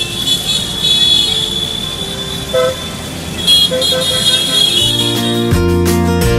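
Street sound of motor scooters riding past in traffic, with a short horn toot about two and a half seconds in. Music with a guitar comes in near the end.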